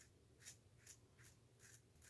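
Double-edge safety razor scraping lathered stubble on the chin and neck: four faint, short rasping strokes.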